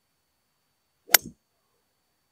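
A 5 hybrid strikes a Nitro Elite Pulsar Tour golf ball off the turf: one sharp, short click of impact about a second in.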